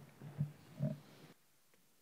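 Two short, low grunt-like vocal sounds about half a second apart, faint, such as a murmur or throat-clearing. The background hiss then cuts off suddenly.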